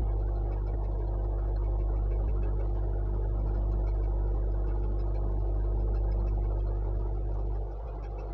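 A steady low mechanical hum, dropping slightly in level near the end.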